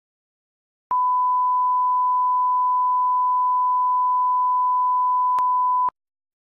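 Steady single-pitch test-tone beep of the kind played with television colour bars, starting about a second in and cutting off suddenly just before the end, with a brief click near the end.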